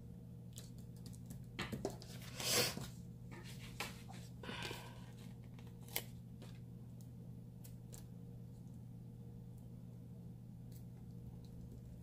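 A paper sticker being peeled off its backing sheet and handled: a short ripping rasp about two and a half seconds in, a softer one near five seconds, then a light tap and faint paper ticks. A low steady hum runs underneath.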